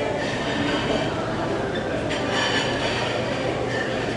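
Steady din of a busy buffet dining hall, with a brief clatter of utensils or dishes about two seconds in.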